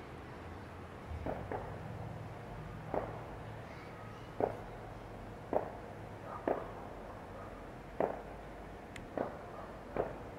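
Soft, short knocks or thumps, about nine of them at uneven intervals of roughly a second, over a low steady background hum.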